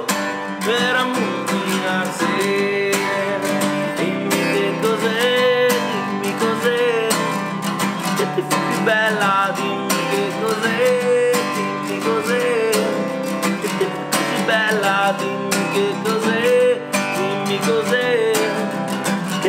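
A Gibson acoustic guitar strummed in a steady rhythm, with a man singing over it.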